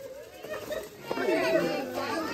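Excited voices of a group of young children playing together, high-pitched chatter and calls that grow louder and busier about a second in.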